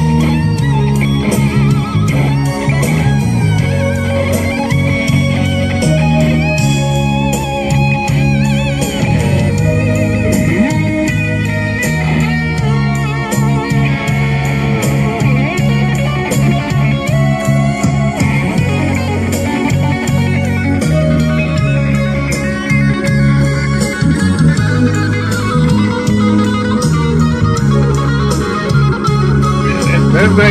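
Electric guitar played solo through an amplifier: a melodic lead line over steady low bass notes, continuous and loud.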